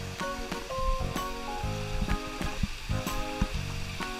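Music with a steady beat over a steady hiss of water spraying and splashing from a water-play structure's fountains.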